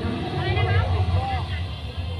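People talking in the background over a steady low hum.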